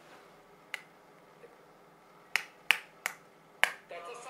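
Five short, sharp clicks over faint room tone: a single one under a second in, then four more in quick succession in the second half.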